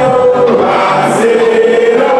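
Many voices singing together over loud music: a crowd singing along with a song, with sustained, gliding notes.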